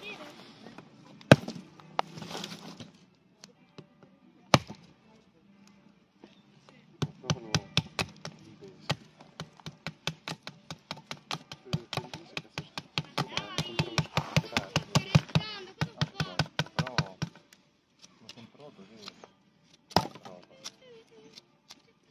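A heavy fixed-blade knife chopping into dry branches: a few single knocks, then a fast run of blows at about four a second lasting some ten seconds.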